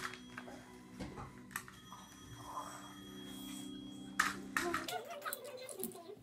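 Lego pieces and a paper instruction booklet handled on a tabletop: a few light clicks and a soft rustle. A steady low hum runs underneath and cuts off near the end.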